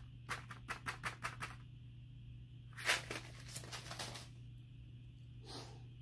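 Watermelon seeds rattling out of a paper seed packet as it is shaken over a palm: a quick run of light clicks in the first second and a half, then a louder rustling burst about three seconds in, with a faint rustle near the end.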